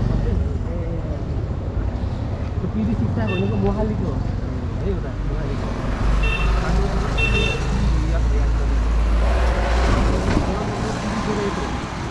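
Street traffic with a steady low rumble of vehicles and people talking in the background; short high beeps sound about three, six and seven seconds in.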